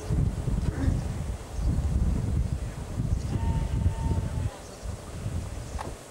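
Wind buffeting the microphone in uneven gusts, a low rumble that swells and drops.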